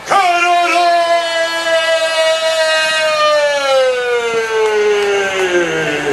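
A man's long drawn-out shout through a microphone and PA, one unbroken call held about six seconds with its pitch slowly falling, in the style of a wrestler's self-announcement as an impression of Mr. Kennedy.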